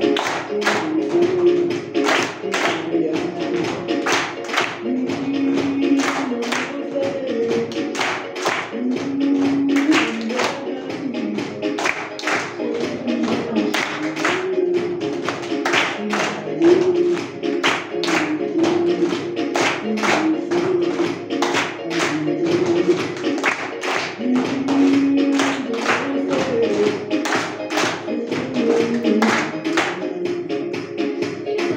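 A group's body percussion: rhythmic hand claps and chest pats, a steady run of sharp claps, performed over music with a sung melody.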